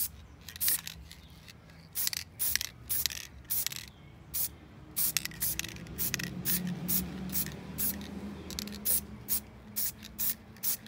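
Aerosol can of black matte spray paint hissing in many short bursts, roughly two a second, as the nozzle is pressed and released.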